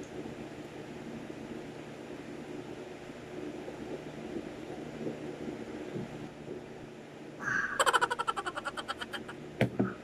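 A man drinking from a small glass, followed by a quick stuttering run of short sounds lasting about two seconds, then a single sharp knock near the end.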